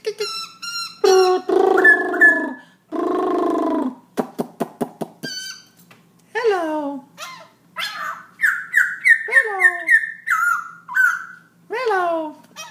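A caged black-throated laughingthrush singing a varied song: two harsh, voice-like notes, a quick run of clicks, then falling whistles and a string of clear whistled notes in the second half.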